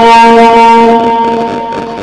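A man's voice holding one long steady note of a naat (Islamic devotional song), fading away over the second half.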